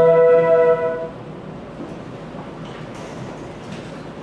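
Flute ensemble holding a sustained chord that is released about a second in, leaving quiet room noise.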